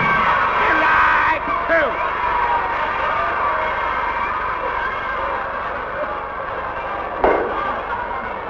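Laughter coming in short rising-and-falling bursts, over a steady background noise that is dense in the first second or so. There is a single sharp thump about seven seconds in.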